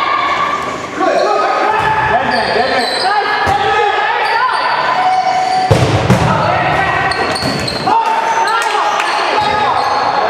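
Dodgeball game in a gym hall: several players' voices shouting and calling over balls thudding and bouncing on the hard floor, with a heavier thud about six seconds in. Everything echoes in the large hall.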